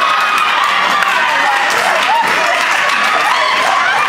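Church congregation cheering and calling out together, many voices at once, with some clapping.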